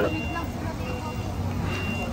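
Outdoor background noise: a steady low hum with a faint, high-pitched beep that sounds several times at uneven gaps.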